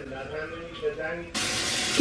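Running water from a tap, a steady hiss that starts suddenly about two-thirds of the way in, with a faint voice before it.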